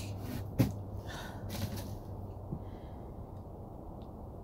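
A woman breathing audibly in short, noisy breaths between sentences while upset, with one sharp click about half a second in.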